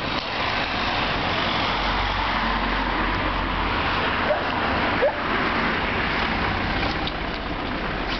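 Road traffic on a street: the noise of passing vehicles swells soon after the start and eases off near the end, with a brief high squeak about five seconds in.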